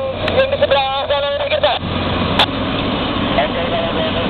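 Heavy diesel machinery running steadily as a Caterpillar 329D excavator dumps a bucket of sand-stone into a dump truck. A person's voice is heard over it for the first couple of seconds. A single sharp knock comes about halfway through.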